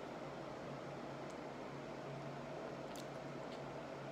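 Quiet, steady room noise: a low hum with an even hiss, and a couple of faint ticks about three seconds in.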